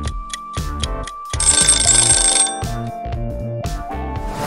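Upbeat background music with a countdown timer sound effect: steady clock ticks, then, about a second in, a bell rings rapidly for about a second as the time runs out.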